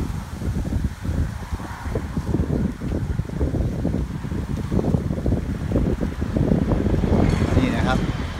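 Wind buffeting the microphone: an uneven, gusty low rumble. A short rising tone comes in near the end.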